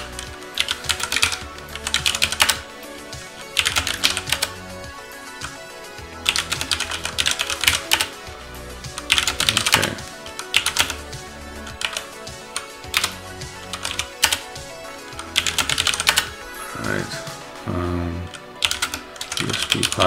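Computer keyboard typing in short bursts of rapid keystrokes as operator commands are entered, over quieter background music.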